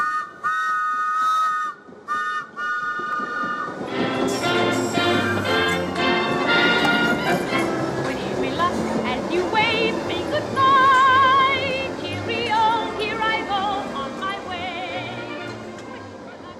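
A London Underground train's horn sounds twice, two held blasts of under two seconds each. About four seconds in, music with a wavering, vibrato singing voice begins and runs on, fading near the end.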